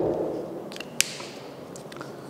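Marker pen on a whiteboard: sharp taps as the tip strikes the board, the loudest at the start and another about a second in, with faint scratching between.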